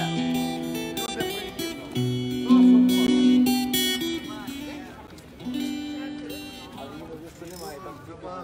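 Acoustic guitar played through a small amplifier, picking notes and chords in an instrumental passage. It grows quieter about halfway through, with people's voices beneath it.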